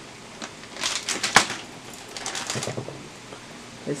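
Plastic seasoning bags crinkling and rustling as they are handled, with a sharp crackle about a second and a half in and a softer rustle later.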